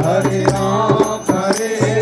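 Devotional chant sung by a man into a microphone, with the group clapping hands in a regular beat over a steady low drone.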